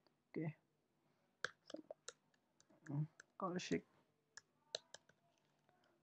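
Faint computer keyboard keystrokes as a word is typed: a quick run of about five clicks, then a few single clicks a couple of seconds later.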